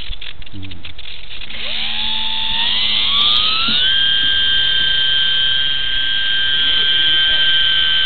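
Brushless electric motor and propeller of an E-flite UMX P-47 BL micro RC plane, heard from its onboard camera, spooling up as the throttle is advanced. The whine rises in pitch over about two seconds, then holds steady and high.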